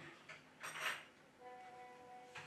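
Faint handling noise of small phone parts on a work surface: a short scrape about two-thirds of a second in, then a faint steady tone in the last half second.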